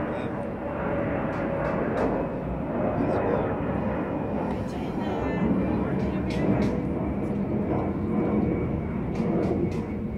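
Indistinct voices of a small group talking, over a steady low rumble.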